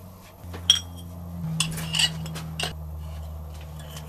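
Light metal clicks and clinks, about five, the sharpest about a second in, as a piston is handled onto the connecting rod and its gudgeon pin pushed through. A steady low hum runs underneath.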